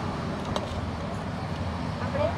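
Steady low rumble of road traffic, with one light click about half a second in.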